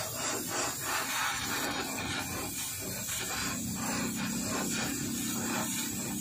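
A gas torch hissing steadily at the water pump of a small generator set, with rough metal scraping strokes over it, about three a second.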